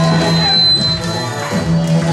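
Live electronic noise music: a low droning tone layered with electronic tones and noise, with a thin high whistle-like tone sounding for about half a second near the middle.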